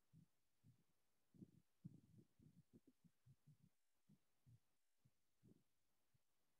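Near silence, with faint, irregular soft strokes of a marker writing on a whiteboard.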